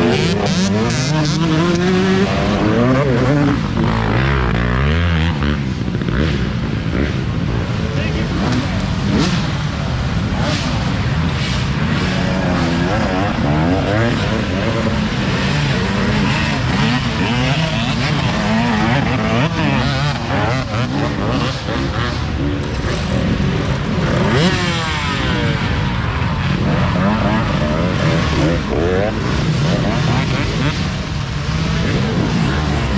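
Several dirt bike engines revving hard and repeatedly, their pitch rising and falling and overlapping, as riders fight for traction climbing a steep, rutted dirt hill.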